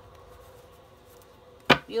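A single sharp knock near the end: a deck of tarot cards tapped down against the tabletop.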